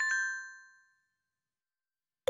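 Electronic bell-like chime: a couple of quick dings at the start that ring on and fade away within about a second.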